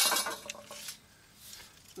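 A sharp metallic clink with a brief ring right at the start, then a few fainter clicks and taps: steel fence top-rail tubing being handled on concrete.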